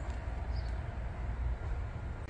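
Low, steady outdoor background rumble with no distinct events.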